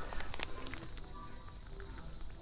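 Quiet outdoor ambience with scattered small clicks and rustles, and a few faint short chirps.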